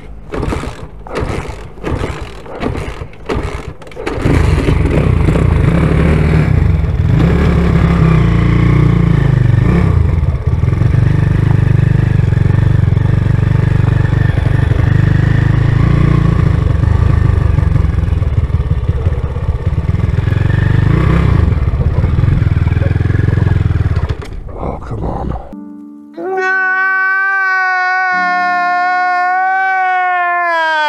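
Small motorcycle engine, a Chinese replacement engine in a Honda C90, catching after a few sharp knocks and then running loudly for about twenty seconds with wind on the microphone. Near the end it gives way to a man's long, wavering wail of crying.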